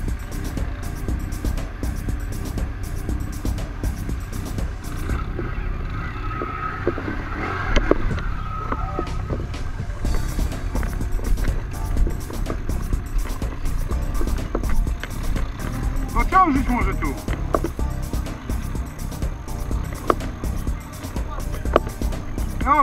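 Quad (ATV) engines running while working through deep mud, a steady low rumble.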